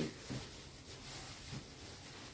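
Faint, irregular rustling and crinkling of a thin plastic food bag being handled and twisted shut by hand.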